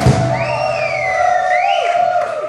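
Live rock band music: a hit at the start, then a sustained chord held out, with high tones sliding up and down over it.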